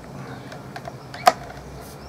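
A few light clicks, then one sharper click about a second and a quarter in, from hands handling the clamped oak boards and bar clamps, over a low steady background.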